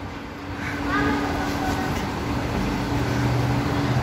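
Steady mechanical hum with a lower drone that grows stronger in the second half, and faint voices in the background.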